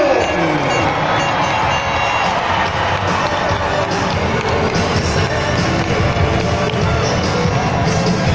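Music playing loudly over the arena's sound system while a large crowd cheers.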